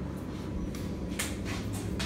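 A few short hissing, rustling bursts of handling noise as a plastic squeeze bottle of acrylic paint is worked over the canvas, heard over a steady low hum.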